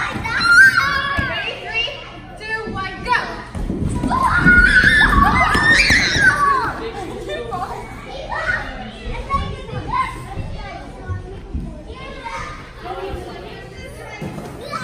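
Many children shouting and chattering as they play in a large indoor play hall, loudest about four to six seconds in.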